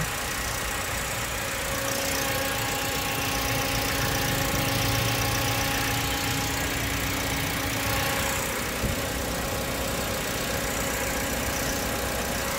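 Toyota Avanza Premio's 1.5-litre four-cylinder engine idling steadily, heard with the hood open.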